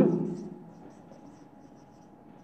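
Felt-tip marker writing on a whiteboard: faint, short scratchy strokes as a word is written out.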